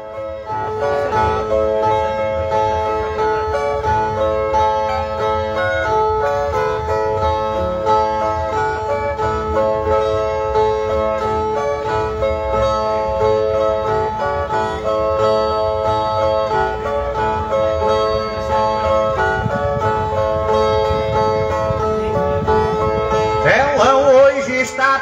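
Two steel-strung Brazilian violas (ten-string folk guitars) playing the plucked instrumental opening of a cantoria de repente, a repeating pattern of ringing notes. It comes before the improvised singing comes in.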